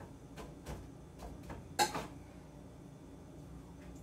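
Light clicks and taps of kitchen things being handled at a counter, about half a dozen in the first two seconds, the sharpest knock just before the two-second mark, then only a faint steady low hum.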